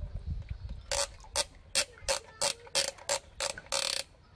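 A toy crawler crane's plastic ratchet mechanism clicking as it is worked by hand: a run of about nine short rasps, roughly three a second, starting about a second in.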